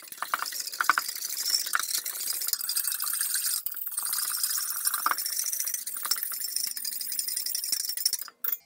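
Wire whisk beating a little liquid in a stainless steel mixing bowl by hand: a fast, continuous scratchy rattle of the wires against the steel, with a brief break about halfway through. This is the yeast, sugar and lukewarm water being stirred together into a pre-dough.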